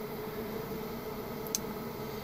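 Steady low background hum with a faint steady tone, and a single light click about one and a half seconds in.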